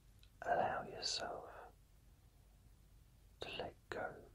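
A man whispering: a short whispered phrase about half a second in, then a brief whispered word near the end.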